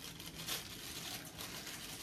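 Faint crinkling and rustling of wrapping as a selfie-stick phone holder is handled out of its packaging.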